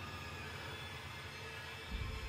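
Faint steady background hum and hiss, with a couple of low held tones.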